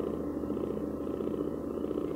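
Electroacoustic music: a steady, low buzzing drone with a fast, even flutter running through it.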